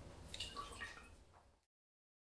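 White wine poured out of a glass into a metal ice bucket: a short, faint splashing trickle. It cuts off abruptly about a second and a half in.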